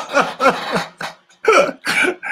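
A person laughing heartily: a run of short falling "ha" pulses, about three or four a second.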